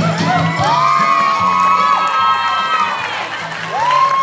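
Audience cheering with several overlapping high-pitched, long-held whoops, over the last of the music, which fades out about a second and a half in.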